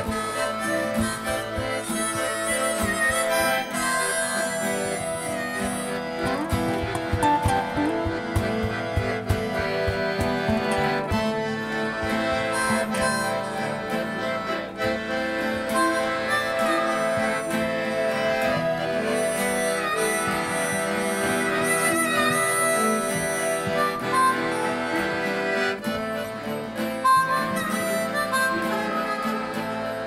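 Live acoustic band playing an instrumental passage: a harmonica played into a microphone carries the lead over acoustic guitar and accordion.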